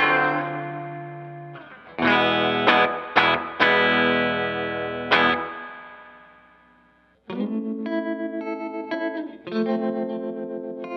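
1990 Rickenbacker 325JL short-scale electric guitar with Toaster pickups, played through a 1964 Fender Twin Reverb: strummed chords are struck several times and left to ring out, fading almost to silence. About seven seconds in, a new run of chords starts that pulses quickly in volume.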